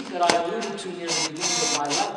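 Voices singing liturgical chant, holding sustained notes, with a brief hiss a little past the middle.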